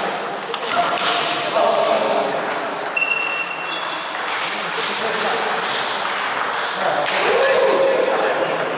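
Table tennis balls clicking off bats and tables in a hall where several tables are in play, over a murmur of voices. A brief high squeak sounds about three seconds in.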